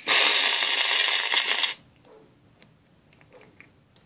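Aerosol shaving cream can (Barbasol) spraying foam: a loud, even hiss for nearly two seconds that cuts off sharply, followed by a few faint clicks.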